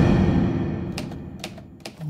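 Manual typewriter keys striking a few times, once about a second in and again near the end, over a low sustained tone that fades away.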